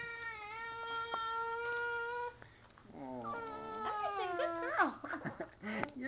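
Infant crying: one long, steady wail of about two seconds, a short pause, then a second wail and several shorter sobbing cries.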